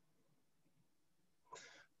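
Near silence: a pause in a webinar, with a short, faint breath drawn in near the end.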